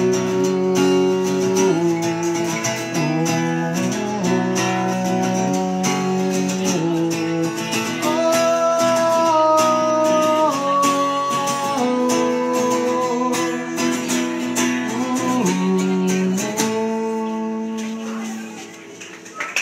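Solo acoustic guitar playing an instrumental outro: picked and strummed chords changing every second or two, with a final chord left ringing near the end.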